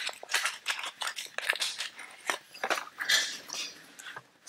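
Small plastic clicks and rustles, irregular and close, from hands handling a microSD card and its plastic SD card adapter.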